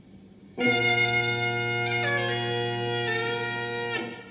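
Trás-os-Montes bagpipe (gaita de foles transmontana) starting suddenly about half a second in, with a steady low drone under the chanter. The chanter moves through a few notes before the sound cuts off near the end.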